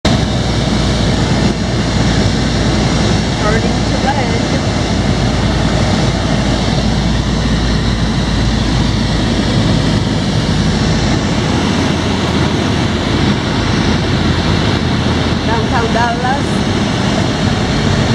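Loud, steady in-cockpit drone of a SportCruiser light-sport aircraft's piston engine and propeller with wind noise, heard from the cabin on approach. The deepest part of the drone eases about halfway through, as the aircraft slows down.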